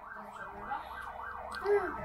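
Faint emergency-vehicle siren in a fast yelp, its pitch rising and falling about four times a second, as the vehicle sets off on a call.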